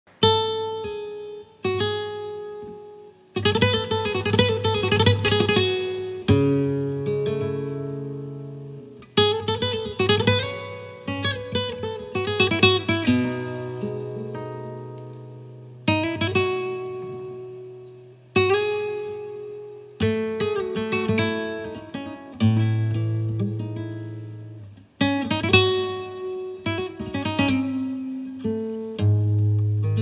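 Solo nylon-string Spanish guitar played fingerstyle in flamenco style. Struck chords and bass notes are left to ring and fade, broken up by quick runs of notes.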